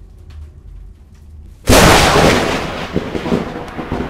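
Intro sound effect: a low rumble, then a sudden loud cinematic boom about one and a half seconds in that dies away slowly over the next two seconds.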